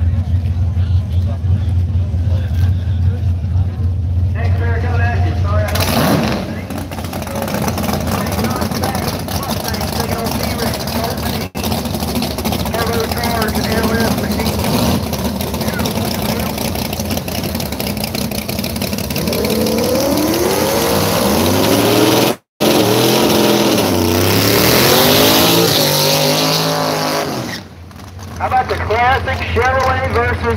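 Drag-racing car engines: a steady low idle rumble, then an engine revving up in rising steps as a car launches down the strip, and after a brief cut another engine rising and falling in pitch under hard throttle.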